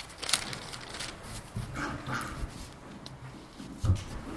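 Paper rustling and handling noise at a table, with scattered clicks, ending in a low thump near the end as a desk microphone on a stand is grabbed and moved.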